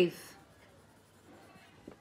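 Faint scratching of a pencil writing on a workbook page, following the tail end of a spoken word at the start.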